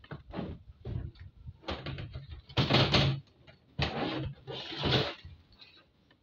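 Crumpled brown pattern paper rustling and crackling as hands handle it on a table, in about six short bursts, the loudest nearly three seconds in.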